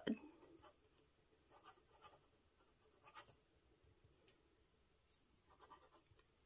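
Kilk Camera Laterna fountain pen nib writing on paper: a few faint, short scratches of pen strokes, with quiet gaps between them.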